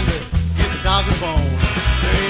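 Country rock song with a full band and a steady beat of about two pulses a second.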